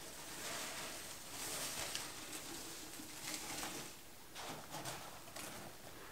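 Hands rummaging through crinkle paper shred and tissue paper in a cardboard shipping box, giving soft, irregular rustling and crinkling.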